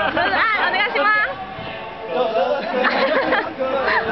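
Several young men talking and laughing over one another, one voice rising sharply in pitch about a second in, with music playing in the background.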